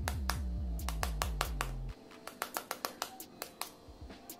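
A table knife tapping rapidly on a raw eggshell to crack it, several light taps a second. A low hum runs underneath and cuts off suddenly about two seconds in.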